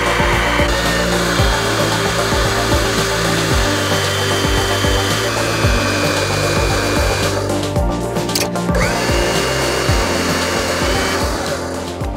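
Electric hydraulic pump driving a crimp press, running with a steady whine while the press crimps a dead-end fitting onto the aluminium section of a steel-cored conductor. The pump stops about seven seconds in, starts again with a rising whine about two seconds later, and cuts off near the end. Background music plays throughout.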